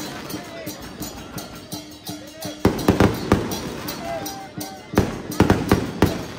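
Chinese dragon-dance percussion of drum and clashing cymbals, playing in two loud clusters of rapid strikes, about three seconds in and again near the end. Between them is a murmur of crowd voices.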